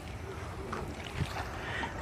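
Outdoor background: a steady low rush of wind on the microphone, with faint voices in the distance.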